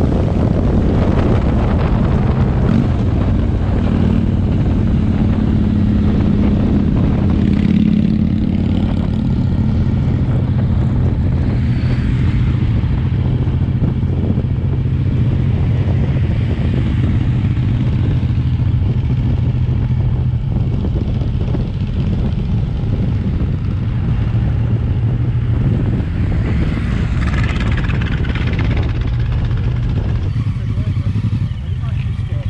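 Motorcycle engine running steadily at road speed, heard from the rider's own bike, under a constant rush of road and air noise.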